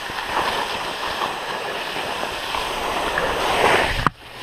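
Skis sliding and turning down soft spring snow, a steady hiss of edges and spraying snow mixed with wind rushing past the microphone, growing louder near the end as speed picks up.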